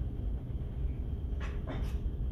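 Steady low rumble of a ferry under way, its engines and ventilation heard from inside a passenger lounge. Near the end come two short, higher-pitched sounds.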